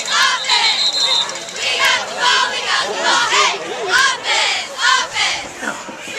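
Football crowd and sideline players yelling over one another as a play runs. A brief steady high whistle blast sounds about half a second in.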